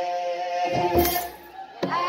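Children's choir singing wereb, an Ethiopian Orthodox chant, in held unison notes, with percussion strokes about a second in and again near the end. The voices drop away briefly before the second stroke, then the group comes back in.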